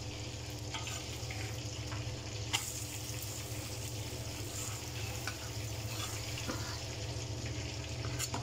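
Food sizzling steadily in hot oil on a gas stove: an omelette frying on a flat iron griddle beside a pan of deep-frying oil. A single sharp tap comes about two and a half seconds in.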